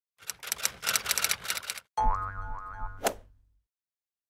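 Animated title-card sound effects: a rapid run of typewriter-like clicks for nearly two seconds, then a springy boing-like tone over a low bass that slides up in pitch twice. It ends with a sharp click about three seconds in.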